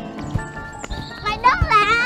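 Background comedy music with a few soft low thumps, then a loud, high-pitched, wavering cry about one and a half seconds in.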